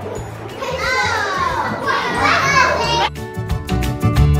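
Young children's voices calling out over background music. About three seconds in, the voices stop abruptly and the music continues alone with a bright, ticking rhythm.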